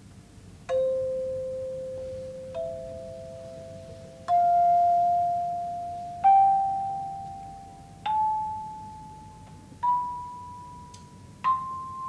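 A set of hand chimes played one at a time up a rising scale: seven struck notes about two seconds apart, each ringing on under the next.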